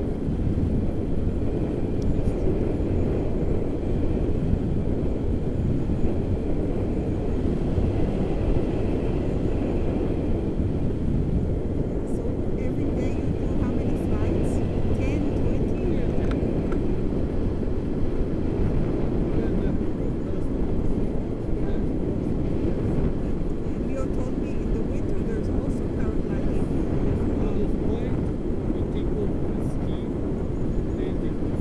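Wind buffeting the microphone of a camera in flight on a tandem paraglider: a steady low rumble.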